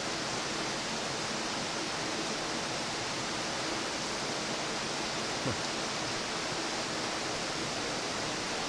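Steady rush of river water, an even hiss with no birdsong in it, with one faint tick about five and a half seconds in.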